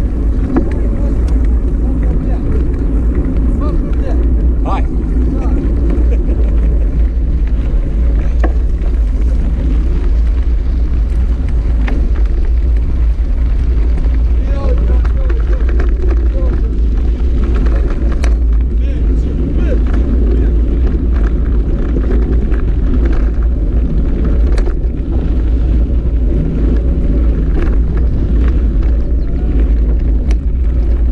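Steady low rumble of wind on the camera's microphone during a mountain bike ride, with tyre noise and scattered clicks and rattles from the bike over a gravel track.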